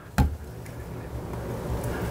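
A single short knock about a fifth of a second in, followed by a steady low background rumble.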